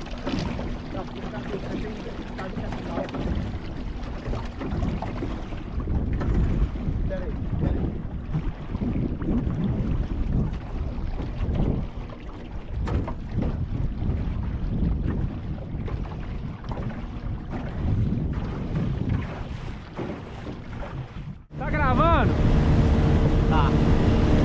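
Wind buffeting the microphone and choppy water slapping against an aluminium jon boat's hull as it moves slowly across a reservoir. After a sudden cut near the end, an outboard motor runs steadily at speed, with voices over it.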